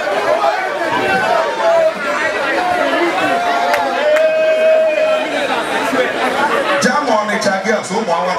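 Concert-hall audience chattering and calling out, many voices at once over one another, with one voice holding a long steady note about four seconds in.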